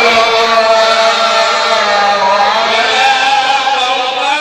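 A man's voice chanting a Maulid recitation through a microphone in long, drawn-out melismatic notes that turn slowly in pitch.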